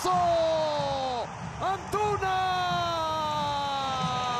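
Spanish-language football commentator's drawn-out goal cry: a held shout of about a second that falls away, then after a brief breath a second, longer held shout sliding slowly down in pitch.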